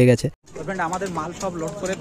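A man's voice finishing a word, then after an abrupt cut, quieter background voices of several people talking.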